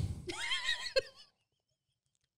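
A woman's high-pitched, wavering laugh that stops abruptly about a second in.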